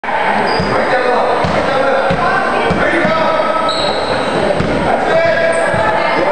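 A basketball bouncing on a hardwood gym floor, a handful of thuds at uneven spacing, with voices chattering underneath in a large, echoing hall.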